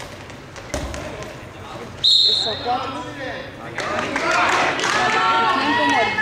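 A goalball thuds along the court, then a referee's whistle gives one short, shrill blast about two seconds in, stopping play. Several voices start shouting from the court and stands soon after.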